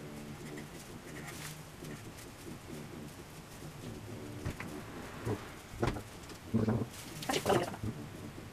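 Low, repeated bird cooing. In the second half come several short rustles and scrapes, the loudest near the end, as a plastic-gloved hand works a paintbrush on the radiator.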